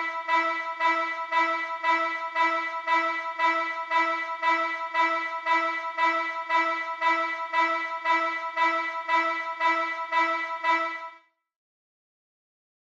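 A synthesizer lead in Logic Pro X plays one note over and over, about twice a second, on the beat at 116 BPM. The note has a bright, bell-like ring and stops about 11 seconds in.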